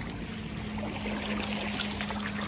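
Lake water lapping and sloshing as a person wades chest-deep, with small splashes. A steady low hum runs underneath and drops slightly in pitch just after the start.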